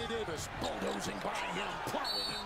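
A basketball being dribbled on a hardwood court during live play, heard as irregular knocks in a broadcast's game audio, with a commentator talking faintly underneath.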